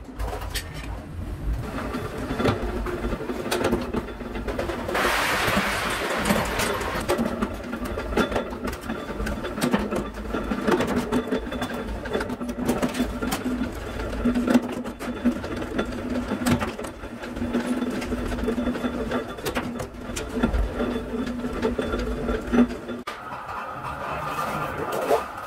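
Sheet-metal workshop noise: a machine motor hums steadily under scattered metallic clicks and knocks from steel sheet being handled and worked. A short hissing scrape comes about five seconds in.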